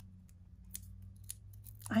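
Faint ticks and small clicks of fingers handling a cardstock leaf and a foam adhesive Dimensional dot, over a low steady hum.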